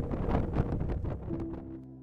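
Strong gusty wind buffeting a storm chaser's camera microphone. About one and a half seconds in it fades out under a soft, sustained music drone.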